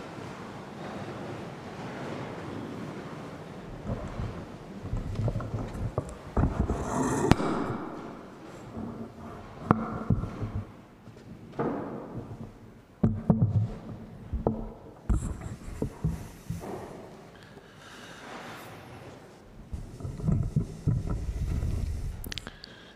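Irregular knocks, thumps and shuffling as people move and sit down on wooden church seats, with scattered handling knocks, the sharpest spread through the middle of the stretch.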